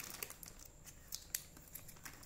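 Faint crinkling of a clear plastic zip bag being handled, with a few small sharp ticks.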